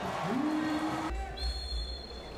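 Referee's whistle blowing one steady, high, shrill blast in a handball arena, starting a little past halfway, over low hall rumble. Before it a single low tone rises and is held for under a second.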